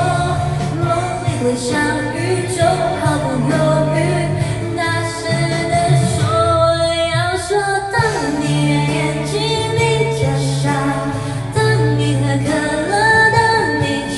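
A woman singing a pop song into a handheld microphone over a backing track; the bass drops out briefly about halfway through.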